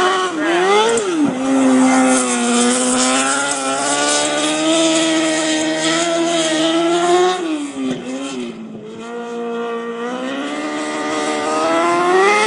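Micro sprint race car's engine running at speed as it laps a dirt oval, its note held high and steady along the straight, dropping and fading about eight seconds in as it backs off for a turn, then rising again near the end as it accelerates.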